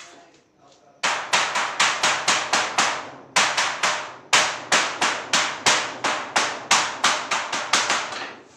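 Hammer striking a steel sheet on the floor in rapid, ringing blows of about four a second. The blows come in three runs with brief pauses about three and four seconds in.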